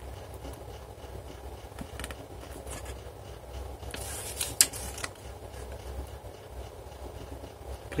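Paper pages of a small printed booklet being handled and turned, a brief rustle ending in a crisp snap of paper about halfway through, with a few faint paper ticks before it. A low steady hum underneath.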